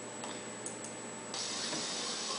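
A few light computer mouse clicks, then a faint steady hiss comes up just over a second in as the recording starts to play back.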